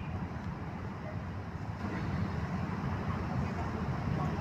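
Steady low outdoor rumble that grows a little louder about two seconds in.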